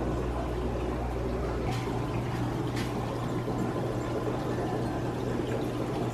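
Steady running and trickling water from the aquariums' filtration, a continuous hiss with a low hum underneath.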